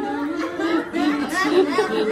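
Several people's voices chattering.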